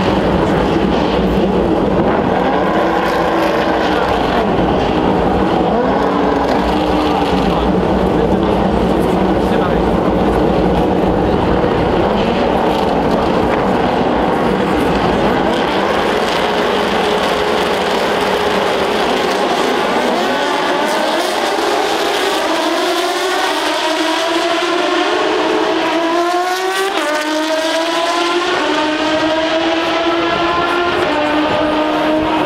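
A field of open-wheel single-seater race cars with their engines running together in a dense, loud mixed drone. From about two-thirds of the way through, many engines rise in pitch together in repeated climbs, as the cars accelerate away through the gears.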